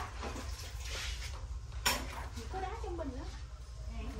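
Light metallic clinking and rattling of a hexagonal wire-mesh bird cage guard being handled, with one sharper tap about two seconds in.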